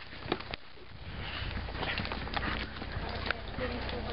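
Horse hooves clopping on a dirt trail as the horse walks: a few irregular sharp knocks over a steady rustling noise that grows louder about a second in.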